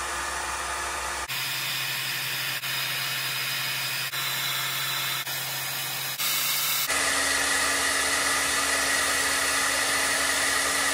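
Heat gun blowing hot air steadily onto a battery's BMS board, with a steady motor hum under the rush of air, heating the board's bimetallic switch to trip its over-temperature cutoff. The sound changes abruptly about a second in and again near seven seconds.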